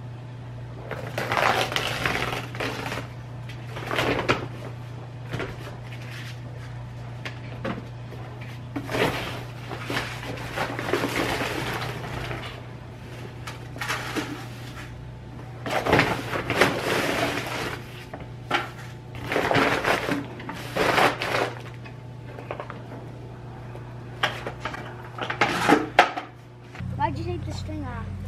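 A paper feed sack of grain being pulled open and handled: the stiff paper crinkles and rustles in irregular bursts a second or two long, over a steady low hum.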